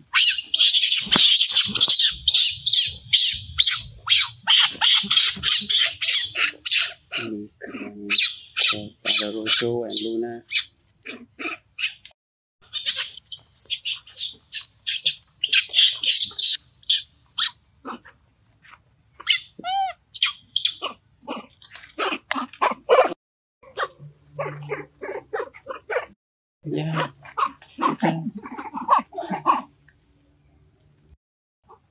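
Young macaques screaming in several bouts of rapid, high squeals, with a few lower cries mixed in.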